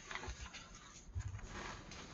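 Faint rustling and soft thuds of hands handling and flattening the paper pages of an open coloring book, with a low thud a little over a second in followed by a short rustle.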